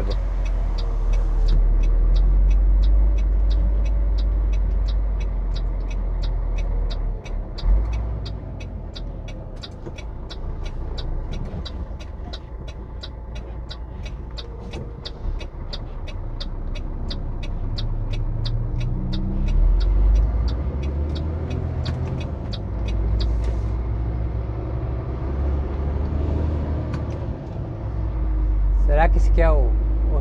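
Heavy truck's diesel engine running with a steady low rumble, heard from inside the cab, while the turn-signal indicator ticks evenly at about two ticks a second through a turn. The ticking stops about three-quarters of the way through.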